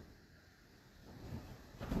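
Faint rustle of a cotton quilt being unfolded, then a short swish of cloth and air near the end as the quilt is flung open.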